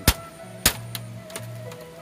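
Hatchet blade chopping into a split gombong bamboo sheet, cutting rows of notches to make a talupuh bamboo mat. There are two sharp strikes in the first second, then fainter taps.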